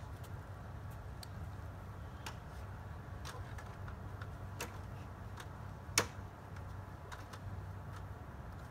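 A few light clicks and knocks from a stepladder being climbed barefoot, scattered a second or so apart, the sharpest about six seconds in, over a steady low outdoor rumble.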